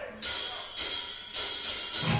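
Drummer's cymbals struck several times in a loose rhythm, each hit sharp and bright, then ringing out briefly: a count-in just before a death metal band starts its next song.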